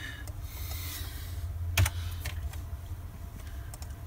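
Computer keyboard keys tapped a few times to delete a field's entry: scattered sharp clicks, one louder about two seconds in, over a low steady hum.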